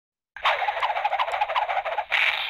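A crackly, static-like noise confined to a narrow, radio-like band, with faint warbling tones in it, cutting in about a third of a second in after silence: an electronic sound effect opening the intro.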